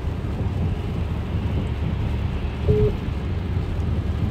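Steady low rumble inside a car's cabin: engine and road noise of the car she is riding in, with a brief single tone about three quarters of the way through.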